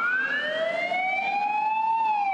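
A fire engine's siren wailing, rising slowly in pitch.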